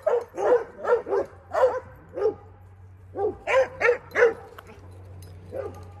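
Dog barking repeatedly, about two to three barks a second, with a pause of about a second near the middle before the barking resumes.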